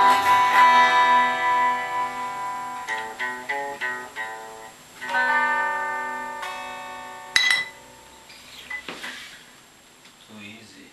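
Guitar playing the end of a song: a chord ringing out, a few single picked notes, then a final chord left to fade away. A sharp click comes about seven and a half seconds in.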